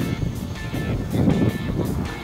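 Music playing over a continuous low, uneven rumbling noise.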